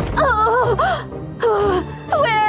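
A woman groaning twice in pain, wordless moans that slide down in pitch, over background music.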